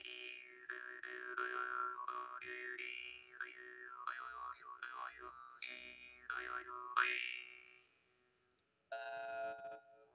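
Handmade jaw harp (drymba) being played: a steady drone struck roughly twice a second, with a whistling overtone melody gliding up and down above it as the player's mouth shape changes. The playing dies away about eight seconds in, followed by one last short twang.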